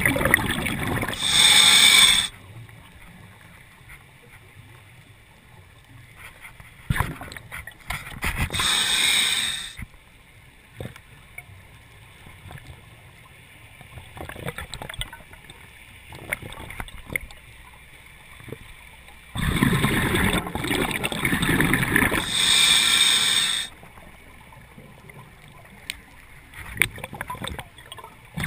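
A scuba diver breathing through a regulator underwater. Each breath is a short high hiss from the regulator and a louder rush of exhaled bubbles, coming about every ten seconds, with faint clicks in the quiet between.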